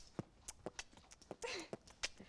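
Hula hoop spinning around a girl's waist, giving faint, irregular clicks and knocks. A short vocal sound comes about one and a half seconds in.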